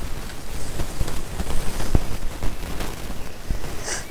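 Rustling and crackling noise with irregular low bumps, the sound of a handheld camera's microphone being moved and handled.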